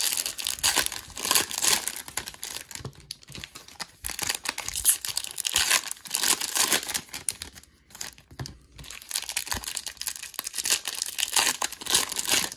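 Foil trading-card pack wrappers being torn open and crinkled by hand, in irregular bursts of crackling.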